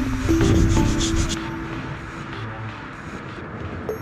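Background music with held notes over the scratchy rasp of 600-grit sandpaper rubbed by hand back and forth over worn suede seat fabric, to smooth out its pilling. The quick strokes are strongest in the first second and a half, then fade under the music.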